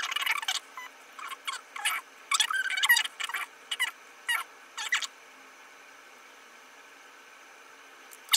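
Small, faint mouth and lip clicks and wet smacks as liquid lipstick is spread onto the lips with a doe-foot applicator wand, a dozen or so short sounds over the first five seconds, then quiet room tone.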